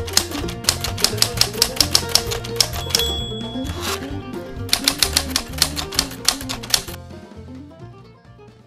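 Typewriter key-clacking sound effect, rapid and even, in two runs: one for the first three seconds and one from about five to seven seconds in, with a brief ringing tone about three seconds in. Background music with a bass line runs underneath and fades away near the end.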